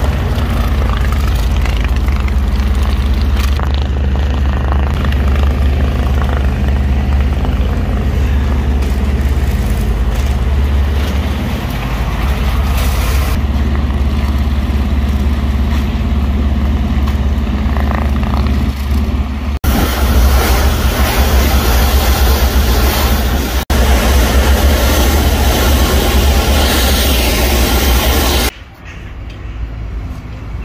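A pressure washer running steadily, a low engine hum under the hiss of a high-pressure water jet blasting wooden tables and paving slabs. It drops sharply to a much quieter background near the end.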